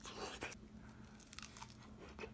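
Faint biting and chewing of a deep-fried avocado slice dipped in ranch, with a few soft crunches and mouth clicks.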